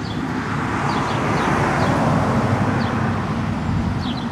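A vehicle passing on a road: traffic noise swells to a peak about two seconds in and then fades. A few faint bird chirps come in the first half.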